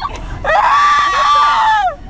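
A young woman screaming after wisdom-tooth surgery: one long, loud, high-pitched cry held for over a second starting about half a second in, muffled by the gauze pressed into her mouth.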